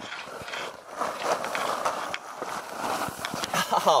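Nylon tent fabric rustling and scuffing as people crawl in through the tent doorway.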